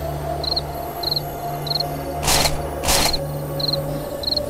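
A cricket chirping steadily, about two short trilled chirps a second, over a low steady drone, as night-time ambience. Two short, louder noises come about two and a half and three seconds in.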